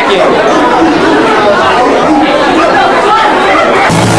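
Loud, jumbled chatter and shouting from a packed club crowd between songs. Just before the end, the band starts playing.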